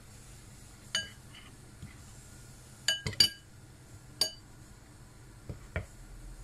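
A metal spoon clinking against a ceramic bowl while flour is spooned over croquettes: a sharp ringing clink about a second in, three in quick succession around the middle, another a second later, then two softer knocks near the end.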